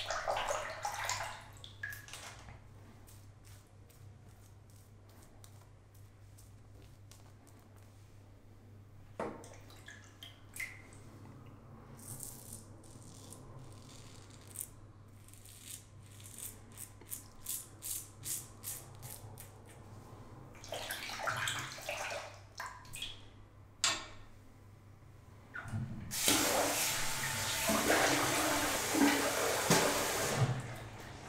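Double-edge safety razor fitted with a Morris Stainless blade, on its second shave, scraping through lathered stubble in a run of short strokes. Water splashes briefly at the start and runs loudly over the last few seconds.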